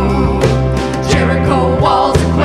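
A live worship band playing a song, with sustained bass notes under it and voices singing.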